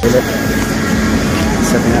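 Steady rushing wind noise on a phone microphone, with short snatches of people talking.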